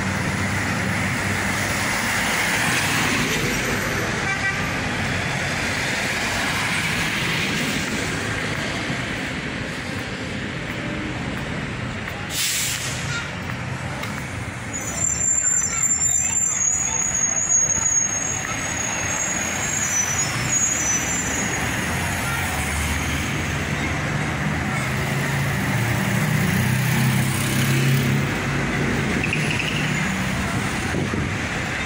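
Road traffic on a city avenue, engines and tyres passing. A short air-brake hiss comes about twelve seconds in, then a high brake squeal on and off for a few seconds as a city bus pulls in; a heavier engine hum swells later as another vehicle approaches.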